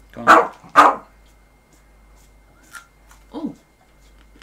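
A dog barking twice in quick succession, loud and about half a second apart.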